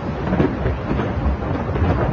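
Loud, continuous low rumble with a noisy hiss above it.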